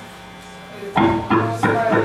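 A quiet moment of faint steady amplifier hum, then about a second in loud amplified music starts, with an electric guitar prominent.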